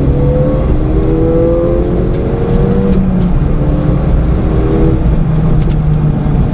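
Ford Fiesta ST engine pulling as it accelerates, heard from inside the cabin over a heavy low road rumble. The engine note rises slowly, breaks off about half a second in and again near three seconds in, as at gear changes, and climbs again each time.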